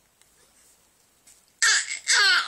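Quiet room tone, then about one and a half seconds in a baby lets out a sudden, loud squeal that falls in pitch.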